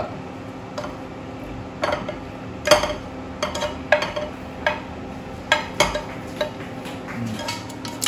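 Wooden chopsticks scraping and tapping against a nonstick frying pan as stir-fried shrimp are pushed out of it into a bowl: about a dozen irregular clinks and scrapes.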